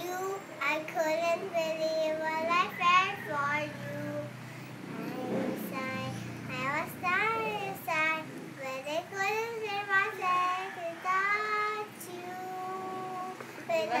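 A young girl singing solo, in phrases of long held notes that waver in pitch, with short breaks between phrases.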